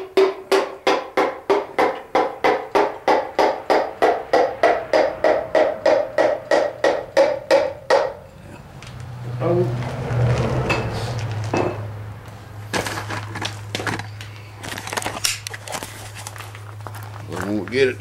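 Piston being tapped down through a ring compressor into a Chevy 350 small-block cylinder bore with a hammer handle: quick light taps, about four a second, each with a short ring whose pitch creeps up, stopping about eight seconds in once the piston is in. After that a low steady hum and scattered clicks.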